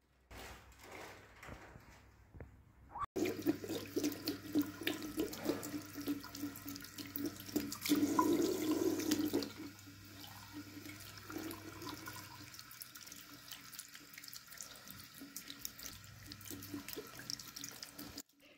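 Tap water running into a sink basin as a kitten is washed under the stream by hand, with small splashes. It starts about three seconds in and gets softer after about ten seconds.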